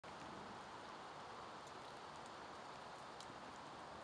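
Faint steady hiss of outdoor background noise, with a few faint ticks.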